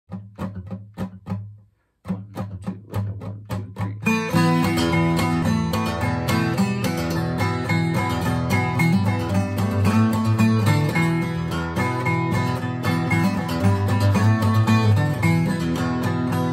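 Acoustic steel-string guitar, a Washburn in DADGAD tuning, played clawhammer style with a down-picking bum-ditty stroke as a solo instrumental intro. It opens with sparse, separate brushed strokes, a brief gap just before two seconds in, then from about four seconds in settles into full, steady rhythmic picking.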